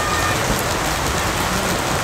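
A steady, even hiss of noise like heavy rain, holding at one level throughout.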